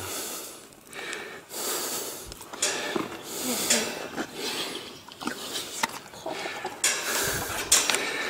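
Horses breathing and sniffing close to the microphone: a series of short, noisy breaths, some lasting about a second.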